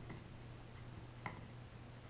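Dog gnawing a hard chew stick: faint scattered clicks of teeth on the chew, with one sharper click a little past a second in, over a low steady hum.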